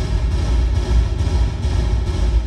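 A textured sample played through Ableton's Reverb set 100% wet, giving a continuous dense wash with a heavy low end: the raw beginning of a techno reverb-bass rumble. The reverb's decay time is being turned down while it plays.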